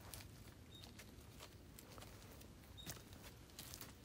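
Near silence with a few faint, scattered footsteps.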